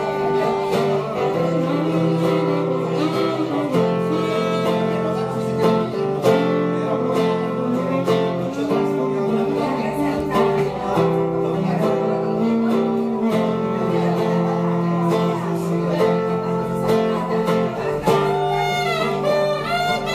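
Acoustic guitar playing an instrumental passage of a song, with long held notes and a steady bass line sounding under it.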